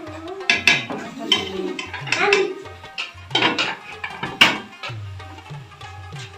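Metal spatula scraping and clinking against a steel cooking pot as rice is stirred, with several sharp clinks, the loudest about four and a half seconds in. Background music with a repeating bass beat plays underneath.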